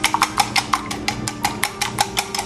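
Wire whisk beating a thin flour-and-water batter in a bowl: a rapid, uneven run of light clicks as the wires strike the side of the bowl.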